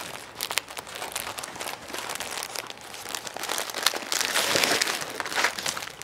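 Folded polyester shirts rustling and crinkling as they are handled and packed into a box, in uneven bursts, loudest about four to five seconds in.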